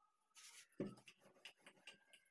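Faint handling sounds of a wooden rolling pin on a worktop: a short soft hiss as flour is dusted on, then a thump as the pin comes down and a run of small knocks and rubs as it rolls out spinach chapati dough.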